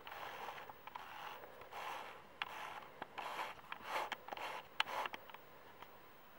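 Faint rubbing and scraping with light clicks, a small plastic quadcopter frame handled and turned in the fingers, in short strokes of about half a second.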